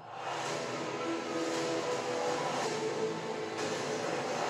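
Movie trailer soundtrack: sustained score with held notes that shift pitch every second or so over a steady rushing rumble, starting suddenly.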